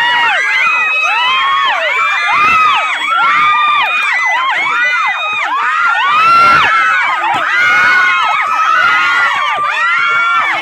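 A group of children shouting and cheering together, many excited voices overlapping without a break.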